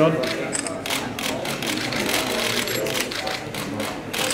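Many camera shutters firing in rapid, overlapping bursts of clicks, over a low murmur of voices.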